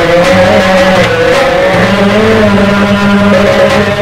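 Live Egyptian folk music from a simsimiyya troupe: a long, wavering held note rides over steady sustained instrumental tones, between sung lines of a fishermen's song.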